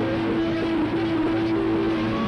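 Loud live rock band playing, with one note held steady for about two seconds over the dense, distorted band sound.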